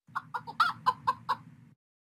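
A hen clucking: about seven short clucks in quick succession, ending about a second and a half in.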